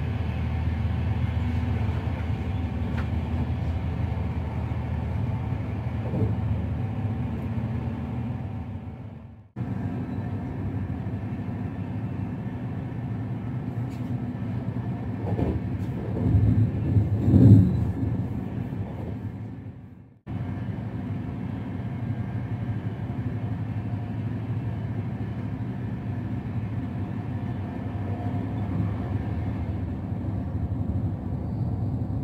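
Steady rumble of a VR Intercity train running on the rails, heard from inside the carriage. It gets louder for a few seconds just past the middle. Twice the sound fades away and cuts straight back in.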